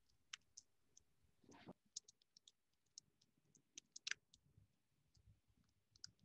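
Faint, irregular computer keyboard keystrokes: about a dozen soft clicks as code is typed.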